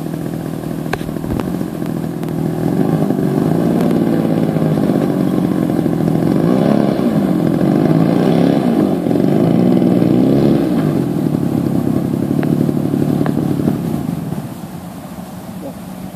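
Engine of a radio-controlled model airplane running as it taxis on the ground. It gets louder about two to three seconds in, wavers in pitch in the middle as the plane turns, and drops back to a lower, steadier run shortly before the end.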